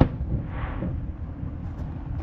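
A distant firework shell bursting with one sharp bang at the start, then a fainter noise about half a second later, over a steady low rumble.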